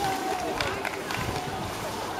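Indistinct voices of spectators and players calling out around a water polo pool, over steady outdoor background noise.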